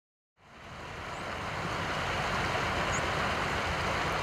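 Steady outdoor ambience fading in from silence about half a second in: an even rushing hiss, with two faint high chirps.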